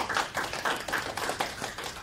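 Applause from a small audience: many overlapping hand claps, thinning out near the end.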